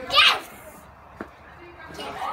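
A young child's short, high-pitched squeal, then a single sharp click about a second later.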